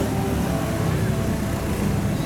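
Steady low rumble of passing motor traffic close by.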